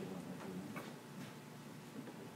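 Quiet room with a few faint, irregularly spaced light clicks.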